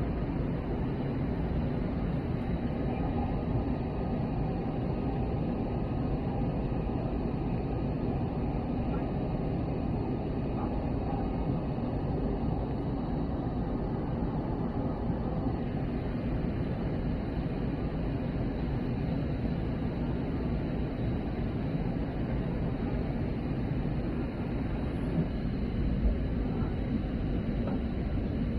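Steady in-flight cabin noise of an Airbus A320neo during its descent: a low, even rumble of airflow and its Pratt & Whitney PW1100G geared turbofan engines, heard from inside the cabin, with a faint high steady whine above it.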